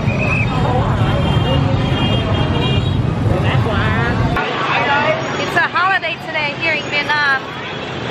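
Dense motorbike and scooter traffic running at a crowded intersection, a steady engine rumble with people's voices over it. A little past halfway the rumble drops away suddenly and nearby voices come to the fore.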